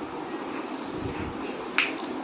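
A single sharp click about two seconds in, over faint room noise.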